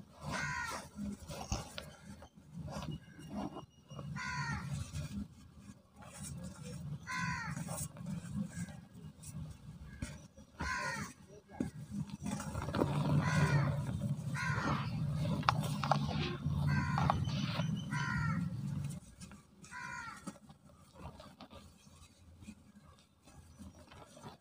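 Dry cement block crumbled and rubbed between the hands into loose powder, with crumbling and rubbing that grows loudest about halfway through and eases off after. About ten short, harsh bird calls, like cawing, sound through it.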